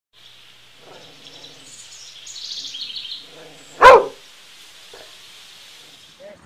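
A dog barks once, a single short, loud bark about four seconds in. Birds chirp faintly in the seconds before it.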